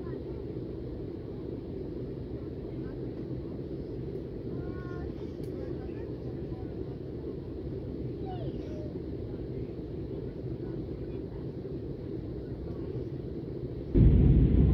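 Steady low cabin noise of a jet airliner in flight, the drone of engines and airflow heard from inside the passenger cabin, with faint voices in the background.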